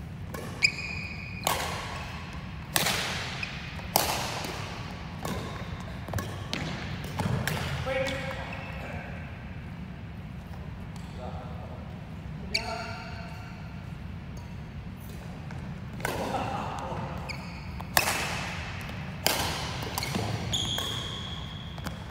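Badminton rally on an indoor court: sharp racket-on-shuttlecock hits every second or few, echoing in the large hall, with players' voices between them.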